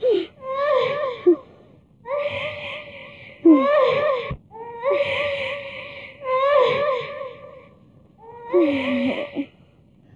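A woman crying: high-pitched, wavering sobbing wails in about seven short bursts with pauses between them.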